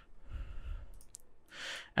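A person breathing close to the microphone: a soft breath out, then a short breath in near the end. A faint click comes about a second in.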